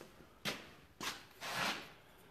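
Three short rubbing, rustling sounds of a hand and sleeve brushing against things while a hand-held phone is moved and a hand takes hold of copper pipes. There is no ringing from the metal.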